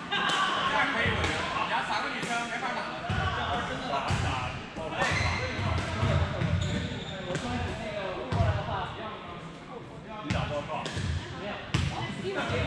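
Balls being struck and bouncing on a hardwood gym floor, irregular thuds echoing in a large hall, over indistinct chatter of players.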